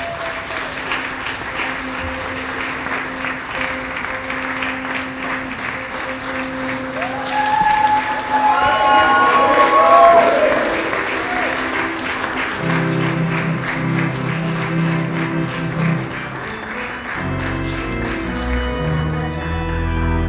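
A crowd applauding, with cheers and whoops that peak about halfway through, the loudest part. Organ music comes in under the clapping about two-thirds of the way through, playing held chords.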